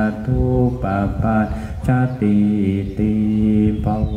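Buddhist monks chanting Pali blessing verses, syllables held on a few nearly steady pitches with short breaks between phrases.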